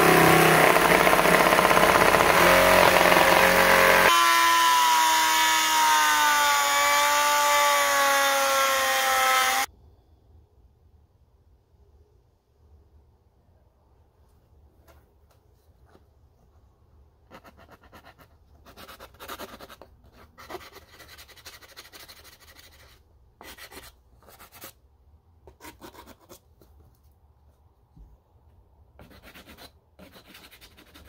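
Milwaukee jigsaw running as it cuts a plastic pickguard blank, its motor pitch shifting about four seconds in, then cutting off suddenly at about ten seconds. After a quiet stretch, short bursts of rubbing from hand-sanding the pickguard's cut edges with a small sanding block.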